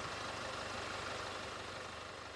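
Jaguar F-Pace 20d's four-cylinder turbodiesel idling steadily, growing slowly quieter.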